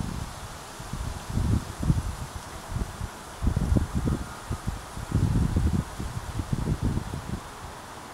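Wind buffeting the microphone in irregular low gusts, coming and going several times.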